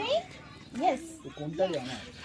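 Speech only: short bursts of talk in a few brief phrases, with a child's voice among them.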